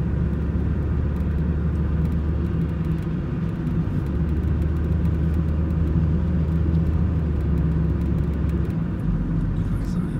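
Steady low engine and road rumble heard inside the cabin of a moving car, with a deep hum that drops away briefly about three seconds in and again near the end.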